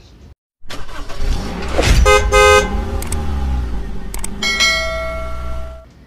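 Road traffic with vehicle horns honking. A vehicle rumbles past, a short honk sounds about two seconds in, and a longer steady honk is held for over a second near the end.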